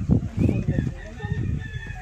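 A rooster crowing: one long drawn-out call starting about half a second in, over low voices.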